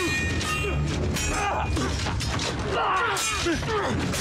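Sword fight from a TV drama's soundtrack: steel blades clashing and ringing again and again, mixed with the fighters' grunts and shouts.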